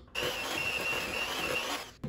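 Electric hand mixer running in a bowl of chocolate chip cookie dough for just under two seconds: a steady high motor whine over a rough churning noise. It starts a moment in and cuts off just before the end.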